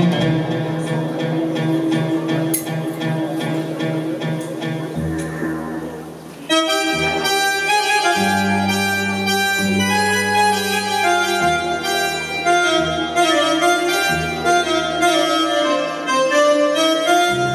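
Live oriental dance music from a small stage ensemble: a softer passage of held and plucked notes, then about six and a half seconds in a louder melody of sustained reedy notes comes in over long, held bass notes.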